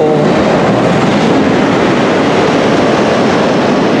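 Loud, steady rushing noise with no pitch, beat or change, filling the gap between words.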